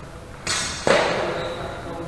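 Steel training longswords (feders) clashing twice, the second strike louder, each leaving a high metallic ringing that fades over about a second.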